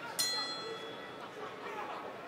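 Boxing ring bell struck once a moment in, ringing and fading over about a second, over the arena crowd's murmur: the bell marking the start of a round.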